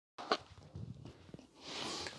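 Faint rustling and soft knocks of a body rolling down chest-first onto a wooden floor, with one sharper tap about a third of a second in.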